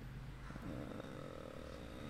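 A man's faint, drawn-out low hum through the nose, lasting about a second.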